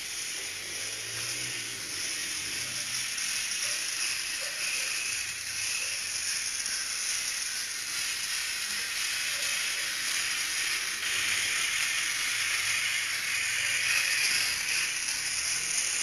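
Small DC gear motors of an ASURO robot running steadily as it drives along, a high whir that grows a little louder about two-thirds of the way through as the robot passes close.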